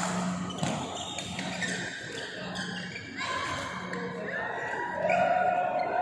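Badminton play in an echoing sports hall: a sharp racket hit on the shuttlecock at the start, followed by shoes squeaking on the rubber court mat as players move, with voices in the background.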